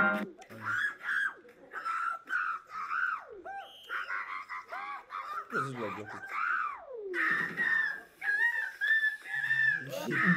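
Young men's voices making high, whistle-like squeals and sliding hoots, mimicking a whistle; a couple of long calls fall steeply in pitch mid-way, and a wavering, held high note follows near the end.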